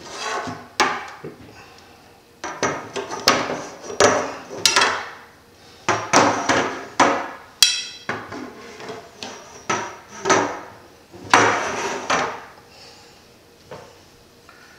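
Copper tubing rails handled on a wooden surface: repeated scraping and rubbing as the tubes are slid and shifted, broken by sharp knocks of metal against wood.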